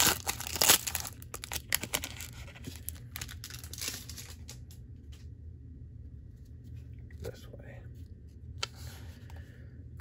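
Foil booster-pack wrapper being torn open and crinkled by hand, loudest in the first second or two, then thinning to a few softer crinkles, over a low steady hum.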